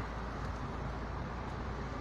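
Steady low rumble of a car's engine and tyres at low speed, heard from inside the cabin.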